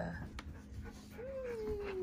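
A dog whines once: a single long whimper that begins a little past halfway and slides slowly down in pitch.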